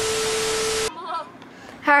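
TV-static glitch transition sound effect: a loud hiss with a steady hum tone under it, lasting just under a second and cutting off suddenly.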